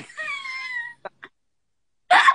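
A woman's high, squealing laugh that slides in pitch for about a second, followed by two short clicks.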